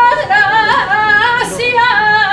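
A solo voice singing a saeta unaccompanied: a high held note breaks off just after the start, then the line goes on in quick wavering melismatic turns.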